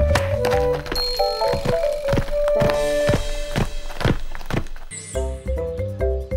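Cartoon background music with a melody over a run of regular thuds, about three a second: cartoon footsteps of a young dinosaur bounding away. About five seconds in, a swoosh, and a new tune starts.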